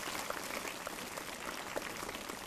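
Audience applauding: a steady patter of many hands clapping at a moderate level.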